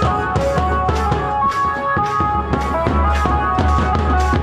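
Loud festival music: large double-headed bass drums beaten with sticks in a fast, even rhythm of about three to four strokes a second, with a high melody running over the drumming.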